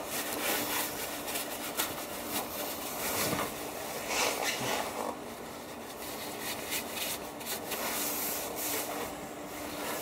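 Paper towel rubbing and rustling over the cast housing of an electric car's rear drive unit in a gloved hand, in short irregular strokes, wiping off spilled transmission fluid around the fill plug.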